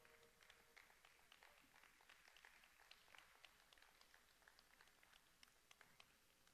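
Near silence: room tone with faint scattered small clicks. A ringing tone dies away in the first half-second.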